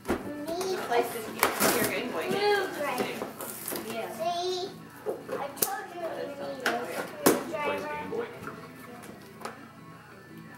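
Children's high voices chattering indistinctly, broken by several sharp clicks and knocks of toys and plastic packaging being handled.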